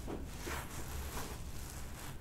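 Quiet room with a low steady hum and faint soft rustling as hands shift on the head and hair; no joint crack is heard.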